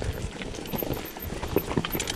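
Mountain bike rolling down a rocky trail: tyres crunching over loose stones, with irregular clatter and knocks from the rocks and the bike, over a low rumble.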